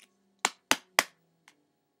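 Three sharp knocks in quick succession, about a quarter second apart, then a faint fourth click about half a second later.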